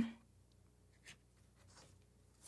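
Faint rustle of paper being handled on a lectern, with a light tick about a second in.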